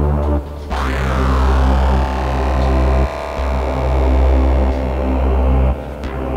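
Dark electronic music: a heavy, sustained synth sub-bass with layered synth tones above it. The bass cuts out briefly three times, and a sweeping synth glide enters just under a second in.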